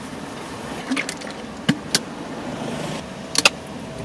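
Steady hum inside a car cabin, with a few light clicks and knocks as a plastic shaker bottle is handled.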